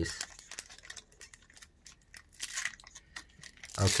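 Foil wrapper of a Magic: The Gathering Double Masters booster pack crinkling and tearing as it is opened by hand, a quick irregular run of crackles.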